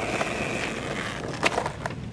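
A steady rolling, grinding noise, broken by two sharp clacks about a second and a half in and just before the end.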